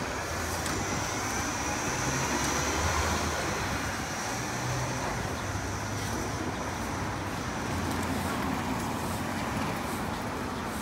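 City street traffic noise: engine hum from a city bus moving off down the street and from cars driving past, steady throughout.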